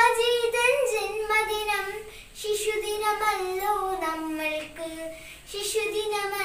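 A child singing a Malayalam song solo and unaccompanied, holding long notes with a slight waver, with short breaths about two seconds in and near the end.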